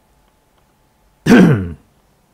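Someone clearing their throat once, about a second in: a short, loud sound that drops in pitch.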